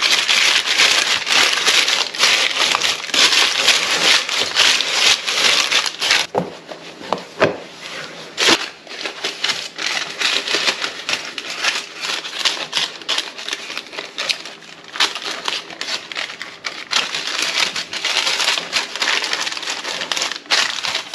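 Baking paper crinkling and rustling as it is folded and pressed into a pie tin. About six seconds in it goes quieter, with a few sharp knocks over the next few seconds, and the crinkling picks up again near the end as pastry is pressed down into the paper-lined tin.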